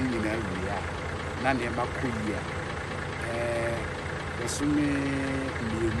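A man's voice making drawn-out hesitation sounds, with pauses between them, over a steady low rumble.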